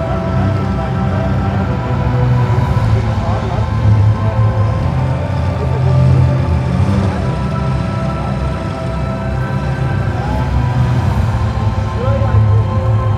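Music with long held tones over a strong low bass, playing loudly and steadily.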